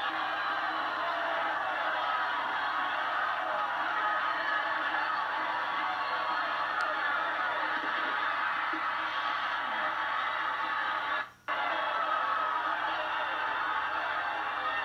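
An old videotape of a high school football game playing through a television: a steady, dense wash of stadium sound. It cuts out briefly about eleven seconds in.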